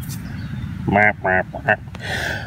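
A man's voice: a few short, mumbled syllables about a second in, over a steady low background rumble.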